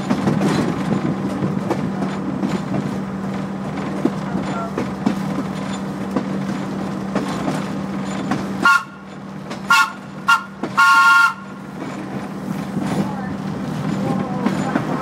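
Rail vehicle running along the track with a steady hum and light clicks, then about eight seconds in its horn sounds four times, three short toots and a longer final blast, as a warning for the road crossing ahead.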